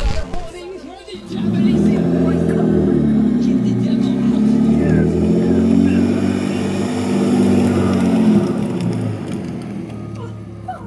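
BMW E36 engine running, its revs slowly rising and falling as the car moves. It comes in about a second in and fades toward the end.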